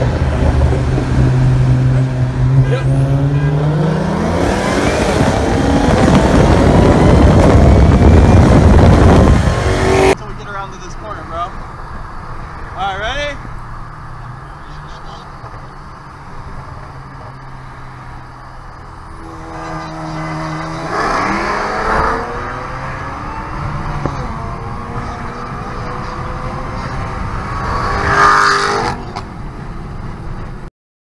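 Cars accelerating flat out side by side: an engine note climbs steeply, then a loud roar of engine and wind builds for several seconds and cuts off abruptly about ten seconds in. After that, heard more quietly from inside the cabin of the high-boost twin-turbo BMW 335i (N54), the engine revs up in several separate pulls. The owner says it pulls hard and then misfires, with his single Walbro 535 fuel pump maxed out.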